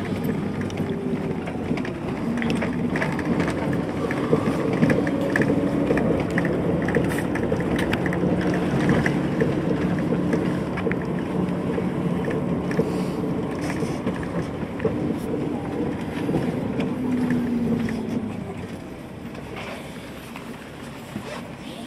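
Bus engine and road noise heard from inside the moving bus: a steady low drone whose note drifts slightly up and down, with light rattles, easing off and getting quieter near the end.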